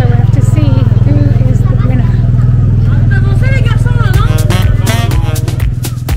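An engine idling steadily close by, over crowd chatter. Music with a beat comes in about four seconds in.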